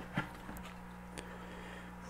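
A few light clicks and taps of a plastic bucket lid being handled, over a faint steady electrical hum.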